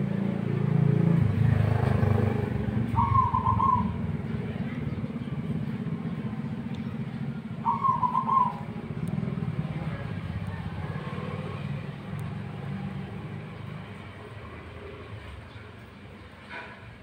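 Zebra dove (perkutut) giving two short, quavering coos, about three seconds in and again near eight seconds, over a steady low rumble that fades toward the end.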